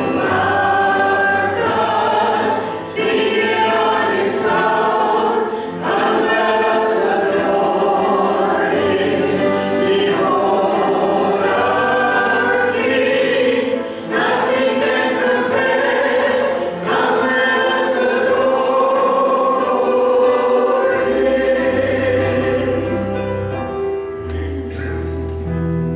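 A worship team of several voices singing a hymn into microphones with keyboard accompaniment, in long phrases with brief breaks between them; low instrumental notes come in near the end.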